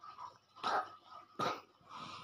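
A child's short, breathy vocal bursts, two main ones about three-quarters of a second apart.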